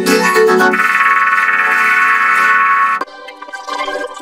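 Heavily effects-processed audio, chorded and vocoded into a dense, organ-like chord of many steady tones. It cuts off suddenly about three seconds in, leaving quieter, sparser distorted tones.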